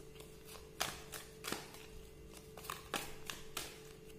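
Tarot cards being shuffled and handled, giving a run of irregular crisp card snaps and flicks, about a dozen over a few seconds.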